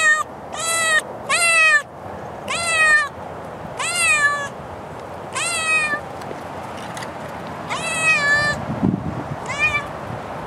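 A seal-point cat meowing loudly and insistently, about eight separate meows, each rising and then falling in pitch, with a longer pause in the middle. There is some low rumbling near the end.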